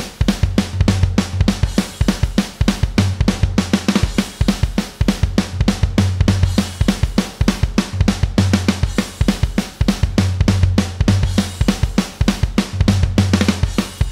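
Sampled rock drum kit from a looped MIDI pattern playing a steady beat of kick, snare, hi-hat and cymbals, with a low held tone sounding in stretches of about a second. The toms and the closing fill notes are set to 50% chance, so different hits of the fill sound on each pass of the loop.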